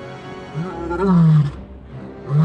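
Male lion roaring: one long, low, slightly falling call about a second in, with music underneath.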